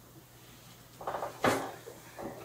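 A paperback pulled out from among the books in a rolling book cart: about a second in there is a short scrape of books sliding, then one sharp knock.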